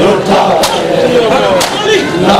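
A crowd of men doing matam, slapping their bare chests with open palms in unison, one loud slap about every second, twice here, over a crowd of male voices chanting together.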